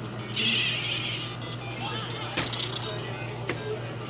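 The LEGO Builder Mario electronic figure playing course music and sound effects through its small speaker, with a short hiss-like effect near the start. Three sharp plastic clicks, about a second apart, come as the figure is moved over the bricks.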